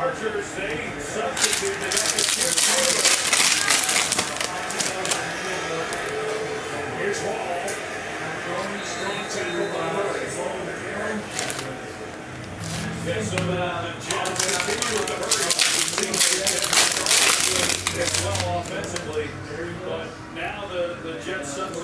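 Background television broadcast of an NFL game: commentators talking, with two louder rushes of noise, about two seconds in and again about fifteen seconds in, over the light clicking and rustle of a stack of trading cards being flipped through by hand.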